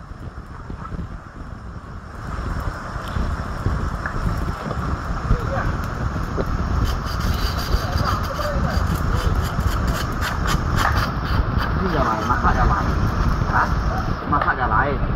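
Steady rush of a shallow river over stones. From about seven seconds in, a run of quick knife strokes scraping and cutting fish on a rock.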